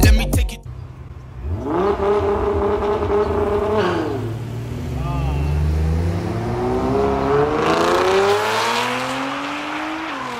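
Nissan GT-R and Ford Mustang drag cars at the start line, engines held at high revs, dipping, then climbing steadily in pitch as the cars accelerate down the quarter-mile drag strip.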